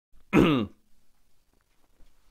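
A man clearing his throat once, a short voiced rasp of about half a second that falls in pitch.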